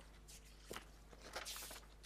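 Faint rustling of paper as pages are leafed through, in several short soft brushes, over a steady low hum.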